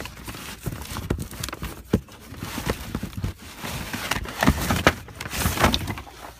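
Fireworks packages being rummaged and pulled out of a cardboard box: irregular knocks and thumps of cardboard boxes against each other, with rustling of the packaging.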